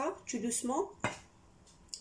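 Brief speech, then a single sharp knock of a kitchen utensil against a mixing bowl about a second in.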